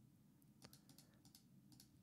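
Near silence, with a few faint, sharp clicks from computer input, the clearest about two-thirds of a second in.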